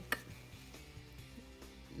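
Faint background music under a pause in the talk, with one sharp click just after the start.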